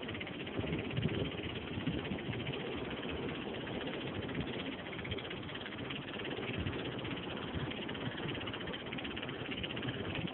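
Steady rushing noise of wind and sea, with irregular low rumbling buffets from wind striking the phone's microphone.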